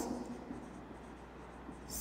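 A marker writing on a whiteboard: faint rubbing strokes as a word is written.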